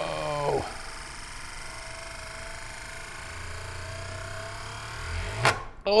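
Euler's disk whirring on its mirror base as its spin dies away, the low whir growing louder until the disk comes to rest with a sudden sharp clack about five and a half seconds in.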